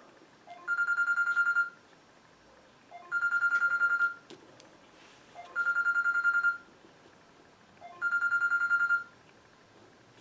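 Telephone ringing: an electronic trilling ring, each ring about a second long with a fast warble, repeating about every two and a half seconds, four rings in all.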